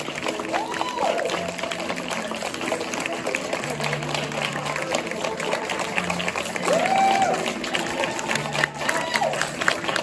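Audience applauding, with whoops and cheering voices rising and falling over the clapping.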